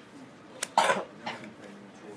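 A person coughs once, sharply, about a second in, with a fainter short cough just after.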